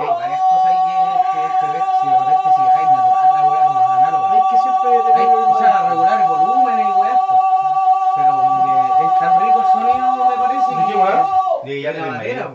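A man's voice holding one high sung note dead steady for about eleven and a half seconds, cutting off shortly before the end, with men's voices talking underneath.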